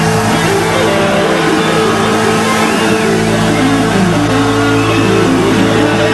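Live rock band playing loud on stage, with electric guitar over held, ringing chords.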